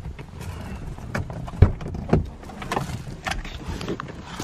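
Low rumble inside a car with a string of irregular knocks and clicks, the loudest about one and a half seconds in and another about two seconds in.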